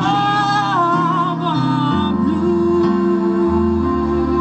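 A young woman sings live through a microphone and PA with a band accompanying her. Her wavering, held sung line ends about two seconds in, leaving sustained keyboard chords.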